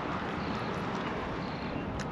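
Steady outdoor background noise: a low hum of distant traffic with light wind on the microphone.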